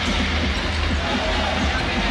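A basketball being dribbled on a hardwood arena court over steady crowd noise, with music playing underneath.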